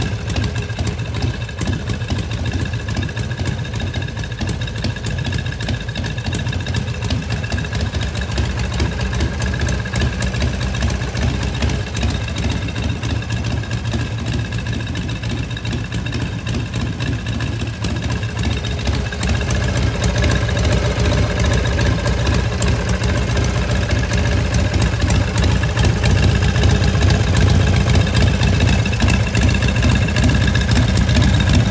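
Harley-Davidson Shovelhead V-twin idling steadily through fishtail exhaust pipes, growing louder in the last third.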